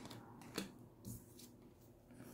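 Faint handling of tarot cards: a few light clicks and taps as cards are picked up off the table, the clearest about half a second in.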